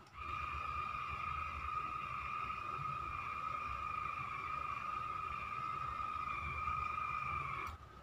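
Vivid and Vogue automatic hair curler sounding a steady, even tone for about seven and a half seconds while a lock of hair is wound into its barrel; the tone cuts off abruptly shortly before the end.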